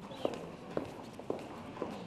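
Evenly paced footsteps, about two steps a second, each step a sharp distinct strike.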